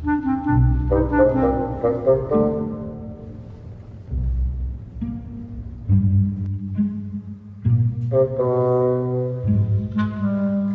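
Instrumental film-score music: sustained notes that change every second or so, over low bass notes.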